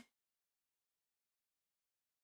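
Dead silence with no room tone at all, after a voice breaks off at the very start.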